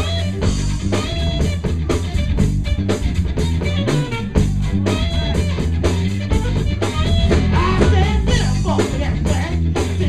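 A live funk band playing: electric guitar over bass and a drum kit keeping a steady beat. A voice comes in singing over the band in the last couple of seconds.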